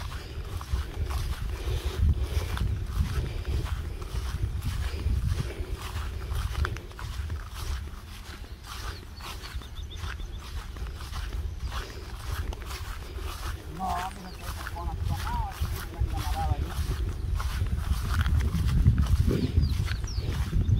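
Footsteps swishing through grass and low weeds as a person walks, with wind rumbling on the microphone.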